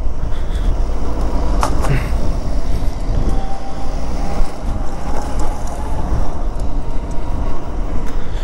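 Wind buffeting the camera microphone and tyre rumble on a ride uphill on an electric scooter in power mode at about 25–30 km/h, a steady low rush with no engine note. A faint steady whine holds for a few seconds in the middle, and there is a brief click about two seconds in.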